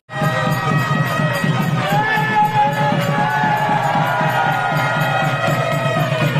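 A wedding crowd cheering and calling out over the getti melam: rapid drumming and long, slightly bending reed-pipe notes, the nadaswaram music played as the thali is tied.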